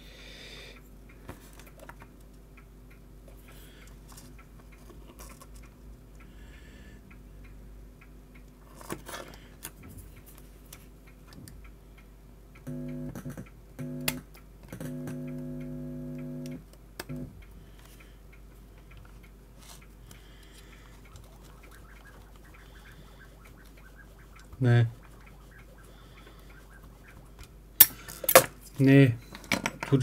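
Steady low electrical hum, with a louder buzz that comes in twice around the middle, once briefly and once for about two seconds. It is interference in the signal path of an opened cheap cassette-to-USB digitizer board, which the hobbyist calls humming, whistling and noise. A thump and a few handling knocks come near the end.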